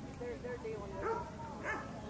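A dog whining and yipping in short high calls, the loudest about a second in and near the end, over the voices of people around the ring.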